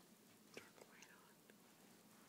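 Near silence, with faint whispering and a few soft ticks.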